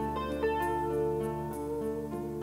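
Tagima semi-hollow electric guitar playing a lead solo line of picked notes, over an electric bass holding one long low note.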